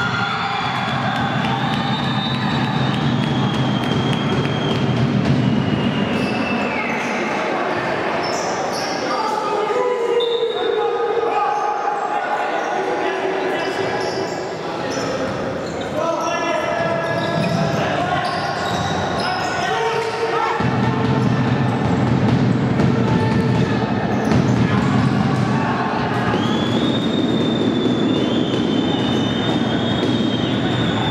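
Sound of futsal play on a wooden indoor court: the ball kicked and bouncing, with players shouting, echoing in a large hall.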